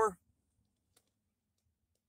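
The last syllable of a man's spoken question, cut off just after the start, then near silence with one faint click about a second in.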